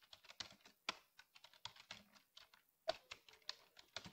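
Faint computer keyboard typing: an irregular run of key clicks, with a couple of firmer keystrokes about a second in and near three seconds.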